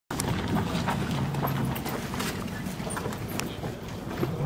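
Footsteps of several people walking on a dirt path: irregular short crunching steps.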